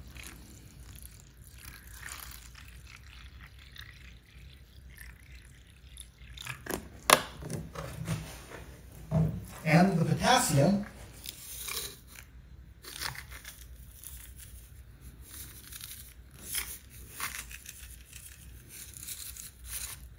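Water poured from a plastic drinking-water bottle into a plastic tub, followed by scattered clicks and knocks as the bottle and tub are handled, the sharpest about seven seconds in.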